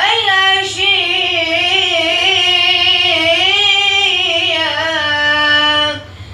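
A boy's voice singing one long, ornamented phrase of an Arabic nasheed, the pitch winding up and down before settling on a held note near the end.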